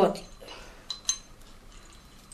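Small steel parts of a homemade bench vise clinking lightly as they are handled and fitted together. There are two quick, ringing metal clinks about a second in, among fainter small ticks.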